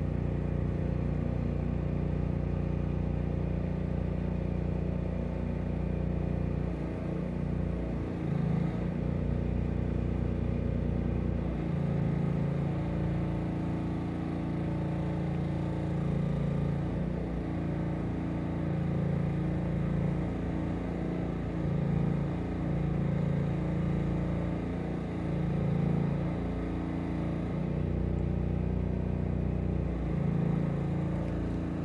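A motor or engine running steadily with a low hum, its note shifting slightly about seven and again about twelve seconds in.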